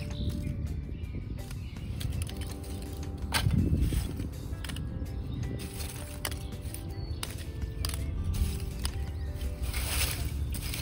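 Background music with lumps of hard maple charcoal clinking and rattling as they are raked out of and tipped from a steel drum kiln in short, scattered clicks.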